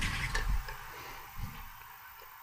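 Faint footsteps and a few small handling knocks as a person moves about a small room and picks up a water bottle, over low room noise.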